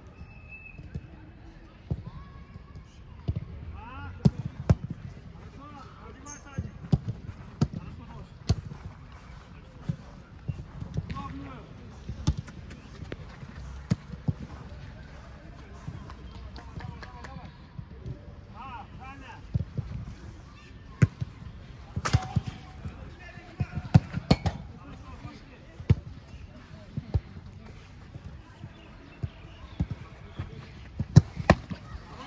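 Footballs being kicked and struck on an artificial-turf pitch: sharp thuds at irregular intervals, the loudest pair near the end, with distant players' voices calling in between.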